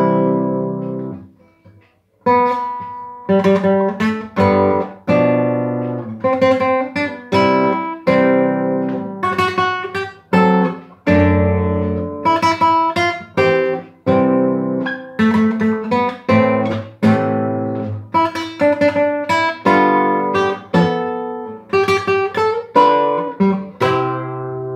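Classical guitar played fingerstyle: a short, simple melody of plucked notes and chords. It opens with a chord that rings and fades, a brief pause about two seconds in, then a steady run of notes and chords.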